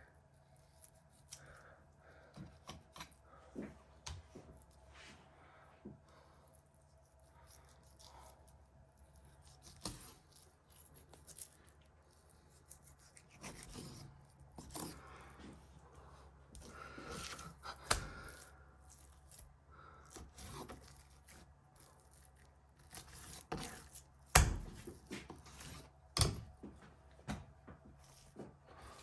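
Boning knife slicing and scraping through venison sinew on a wooden chopping board, faint and intermittent, with scattered sharp knocks of the blade or meat on the board, the loudest of them near the end.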